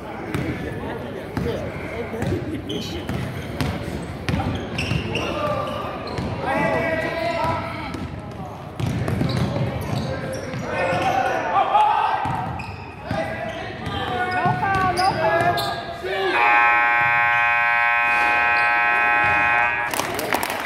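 A basketball bouncing on a gym floor amid players' and spectators' voices in a large hall. Near the end, a loud, steady scoreboard horn sounds for about three seconds, marking the end of the game.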